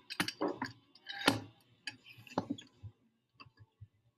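Woodworking clamps being set and tightened on a glue-up press: a run of irregular clicks and knocks, about six in all, the loudest about a second in.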